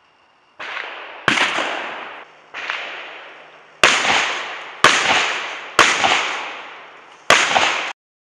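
A series of about seven gunshots, roughly a second apart, each a sharp crack followed by a long fading echo.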